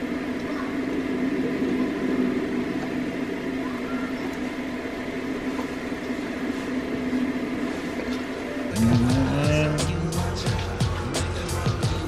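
Film soundtrack heard from a projected movie: a steady drone of sustained held tones. About nine seconds in it changes to music with a beat and sliding pitched notes.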